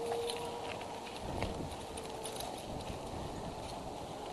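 Scattered small clicks and a few soft knocks, with some rustling, as a climber shifts about among eagle-nest sticks and climbing gear.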